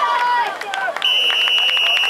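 Spectators shouting over one another, then about a second in a referee's whistle blows one steady blast lasting about a second, blowing the play dead after the tackle.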